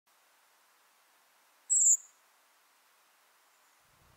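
A single thin, high-pitched 'seep' call of a redwing, slightly descending and drawn out, heard once about two seconds in.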